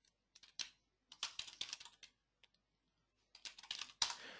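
Faint typing on a computer keyboard: a run of quick keystrokes about a second in and another short run near the end, as a file name is typed.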